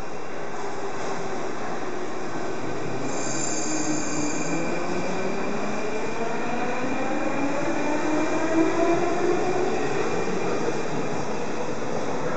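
81-71 metro train pulling out of the station, its traction-motor whine rising steadily in pitch as it gathers speed. A brief high squeal is heard about three seconds in.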